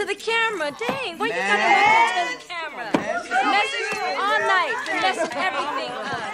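Several people's voices talking over one another, an unintelligible chatter with some higher excited voices, and no music playing.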